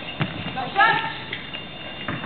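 A single short voice call in a sports hall, with a few sharp knocks, one near the start and another about a second later.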